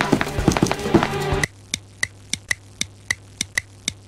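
Background music with drum hits for about a second and a half, then it cuts off. A fast, even ticking follows, about four ticks a second.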